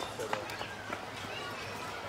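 Background voices of people talking, some of them children, with a few faint short clicks.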